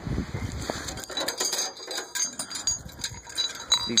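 Loose steel gears and sprockets clinking together as they are handled, a run of light metallic clicks with short high rings. A dull rumble of handling noise comes in the first second.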